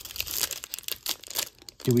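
A foil wrapper of a 2023 Topps Update baseball card pack crinkling and tearing as it is pulled open by hand, in a quick run of crackles.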